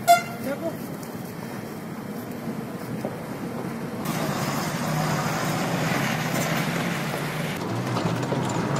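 A heavy multi-axle trailer truck drives past on a rough dirt road, its engine hum and tyre noise growing louder about halfway through.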